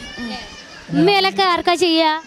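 Speech: faint voices at first, then a high, clear voice close to the microphone from about a second in.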